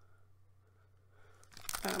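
Plastic snack-bar wrapper crinkling as it is handled, starting about three quarters of the way in after a quiet stretch.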